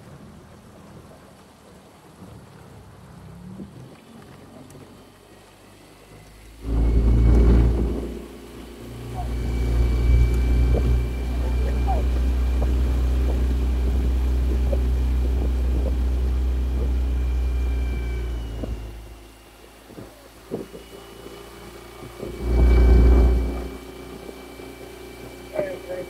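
Outboard motor of a small motor launch running on open water, its steady whine joined by heavy wind rumble on the microphone: a burst about seven seconds in, a long stretch from about nine to eighteen seconds, and a short gust near the end.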